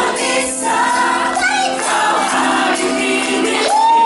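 Live band playing a song with singing, over electric guitar, bass guitar, keyboards and congas.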